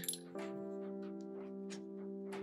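Soft background music holding one steady chord, with faint scratchy strokes of an ink pen on paper at intervals.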